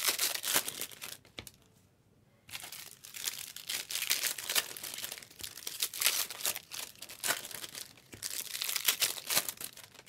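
Foil wrappers of Bowman Chrome trading-card packs being torn open and crinkled by hand, in a dense run of rapid crinkling. It breaks off for about a second near the start, then carries on.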